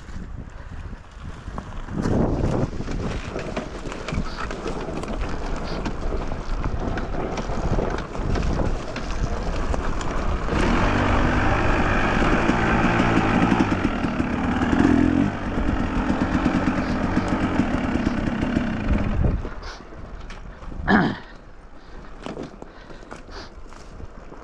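Dirt bike engine running under the rider on a rough trail, getting louder from about ten seconds in and dropping back shortly before twenty seconds. A short laugh near the end.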